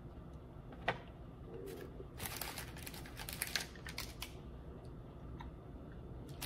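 Mouth sounds of a person chewing a bite of milk chocolate: a single click about a second in, then a couple of seconds of small, quiet wet clicks and smacks.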